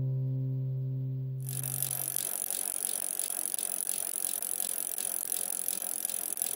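The last chord of an acoustic guitar rings on and fades away; about a second and a half in, a steady hissing noise with a fast, even ticking takes over.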